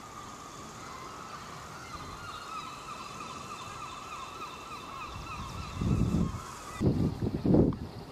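A dense, steady chorus of seabirds calling from the cliffs, many calls overlapping, which cuts off abruptly about seven seconds in. Gusts of wind buffet the microphone over the last few seconds.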